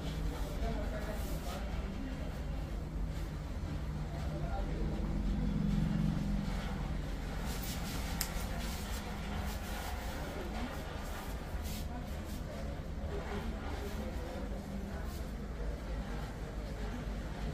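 A steady low rumble with indistinct voices in the background, and a few faint clicks around the middle and later on.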